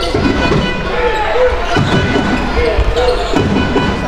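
Sounds of a basketball game in play: the ball bouncing on the court, with voices in the hall.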